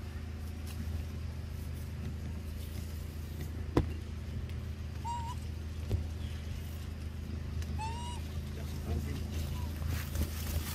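Steady low motor-like hum. A sharp knock comes about four seconds in, and a smaller one near six seconds. Two short, high animal calls come at about five and eight seconds.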